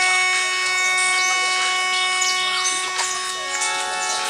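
An instrument holds one steady note between sung lines, moving to a new note about three seconds in. Faint voices sound underneath it.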